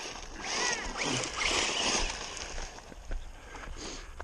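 Arrma Typhon 1/8-scale RC buggy driving on a gravel dirt track: a rasp of its tyres over loose gravel with a brief rising and falling electric motor whine about half a second in, easing off after about two and a half seconds.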